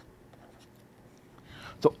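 Faint scratching of a stylus handwriting a short word on a pen tablet, a few light strokes in the first second or so.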